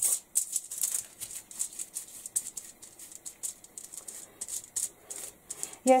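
Paintbrush bristles scrubbing watered-down acrylic paint onto a paper tag: a quick, irregular run of short scratchy strokes, several a second.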